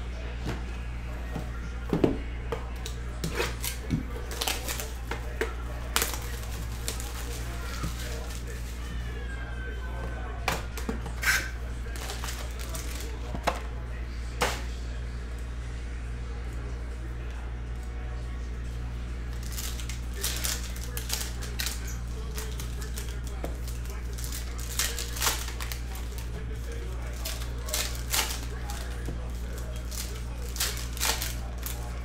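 Scattered light clicks and crinkles of trading cards and foil card packs being handled and torn open, over a steady low hum.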